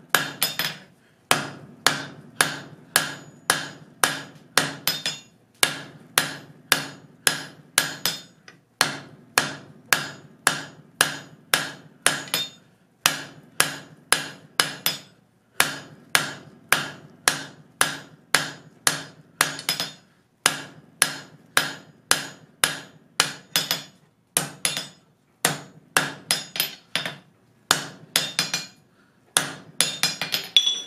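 Blacksmith's hand hammer striking a red-hot bar on the horn of an anvil to draw the stock out: steady blows about three a second in runs of a few seconds with brief pauses between, each blow with a short ring from the anvil.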